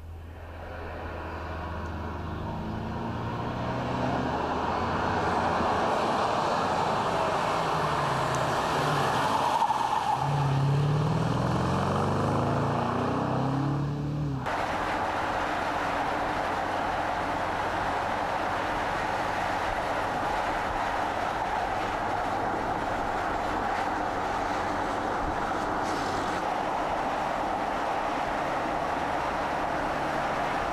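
A BMW X5 SUV driving: engine note and tyre noise swell and bend in pitch as it passes by about ten seconds in. It changes abruptly about halfway to a steady rush of tyre and road noise at speed.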